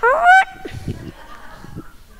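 A man's voice shouting a single word into a microphone, high and rising in pitch, in the first half-second, followed by low room sound.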